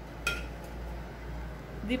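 A single short clink of aluminium beer cans set down on a granite countertop, with a steady low hum underneath.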